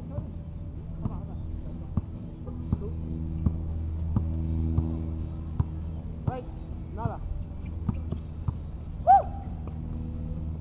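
A basketball dribbled on an outdoor asphalt court, bouncing about once every three-quarters of a second over a steady low hum. A short high squeak, the loudest sound, comes near the end.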